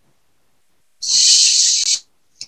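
A second of near silence, then a loud high hiss, about a second long, that starts abruptly halfway through.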